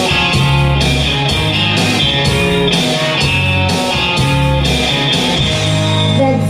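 Instrumental backing track for a solo singer: guitar and bass over a steady beat of about two drum hits a second, with no vocals.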